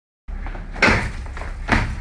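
Boxing gloves landing punches on a punching bag, two sharp hits a little under a second apart.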